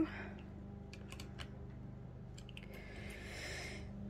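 Faint metallic clicks and taps from an adjustable wrench on a nut of a tufting gun, in two small clusters, followed by a short soft scraping rustle near the end. A faint steady low hum sits underneath.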